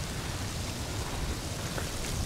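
Steady hiss of freezing rain and wind outdoors, with a low rumble of wind on the microphone.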